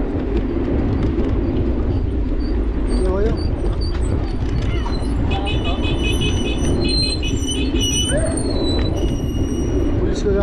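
Wind rumbling on the microphone of a moving electric scooter, with a voice calling out "police" at the start. About halfway in, a rapid run of high, ringing pings goes on for a few seconds.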